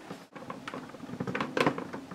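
Small plastic toy accessory pieces clicking and tapping against a plastic toy castle playset as they are snapped into place: a string of light clicks.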